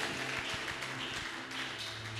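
Hand clapping from a crowd, irregular claps over a noisy haze, with a low steady hum underneath.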